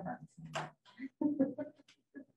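Indistinct talk from people in a small meeting room, a few short phrases too unclear to make out.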